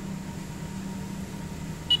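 A single short, high electronic beep from a Mettler Toledo analytical balance near the end, over a steady low background hum.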